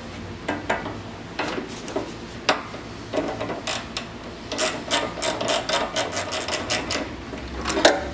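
A wrench and pliers working the adjusting nut on a flap's spring-tension bolt: scattered metal clicks and knocks, then a quick even run of about five clicks a second midway. The nut is being backed off to take tension out of an over-tight spring.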